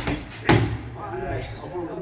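A boxing glove striking a focus mitt: one hit right at the start and a harder one about half a second in. Then low voices talking in the room.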